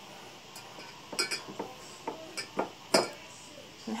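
Ceramic mugs being handled and set down on a hard countertop, giving a run of short clinks and knocks in the second half, the loudest near the end.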